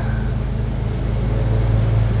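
A lawn mower engine running steadily in the background as a low, even drone.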